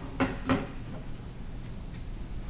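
Two sharp knocks about a third of a second apart, hard objects handled against a wooden surface.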